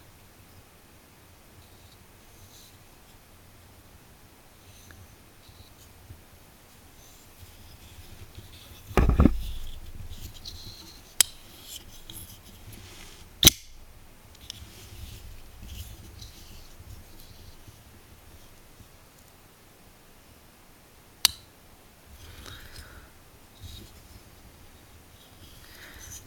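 Small titanium framelock flipper knife on a bearing pivot being handled, with a few sharp, thin metallic clicks as the blade snaps open and locks, the loudest in the middle. One duller thump comes shortly before the first click.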